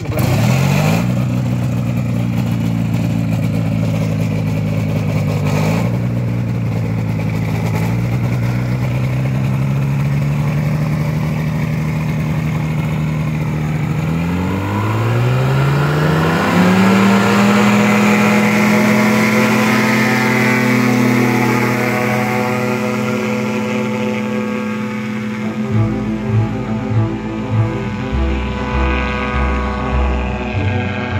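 Engine running steadily, then rising in pitch as it revs up about fourteen seconds in and holding at the higher speed.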